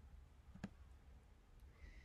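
Near silence: room tone with a low hum, broken by a single faint click about a third of the way in.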